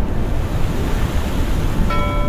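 Steady rushing ocean-water sound, surf-like with a deep rumble, as in an underwater ambience. Near the end, held musical tones come in on top.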